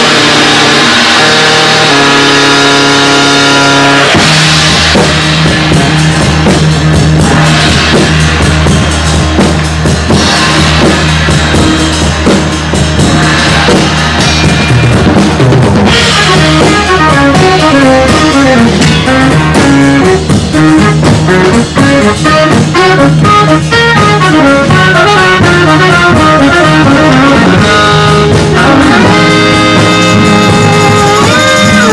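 Live rock band playing an instrumental, with a drum kit driving it. A low bass note comes in and holds about four seconds in. From about halfway, quick runs of short melody notes take over above the drums.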